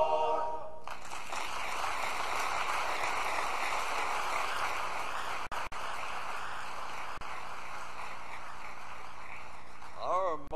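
A men's barbershop chorus's held final chord ends about a second in, followed by steady audience applause, with two brief dropouts in the recording near the middle.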